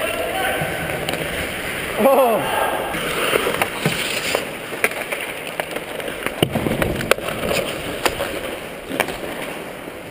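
Ice hockey skate blades scraping and gliding on the rink ice, with a few sharp clacks of sticks and puck, and a brief shout from a player about two seconds in.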